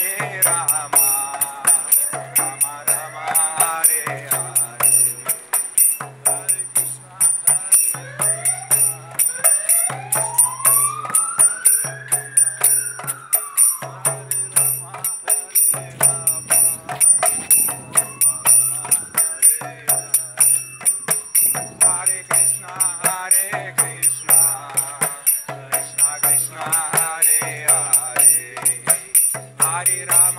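Kirtan music: a mridanga drum keeps a steady repeating rhythm, with brass karatala hand cymbals clinking on each beat. Male voices sing at the start and again near the end.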